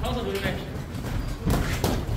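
Boxers sparring in a ring: two sharp thuds close together near the end from gloved blows and footwork on the canvas. A man's voice calls briefly at the start.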